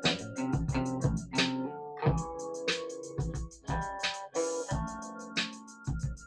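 Electric guitar played along with a backing track of a steady drum-machine beat and keyboards.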